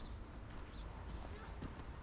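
Footsteps crunching on a snow-covered path at a walking pace, a step about every half second, over a steady low rumble.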